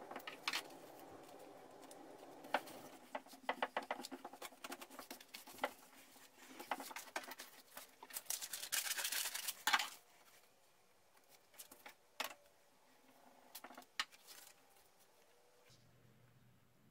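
Paper template being handled and pressed onto a wooden board, with a run of small clicks and taps. About eight seconds in come a couple of seconds of loud paper rustling and scissors cutting paper, then only a few faint taps as the paper is smoothed down.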